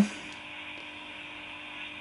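Steady soft hiss from a homebrew 40 m SSB superhet receiver's speaker, with a faint steady hum. There are no signals in it, only band or receiver noise: the band is dead.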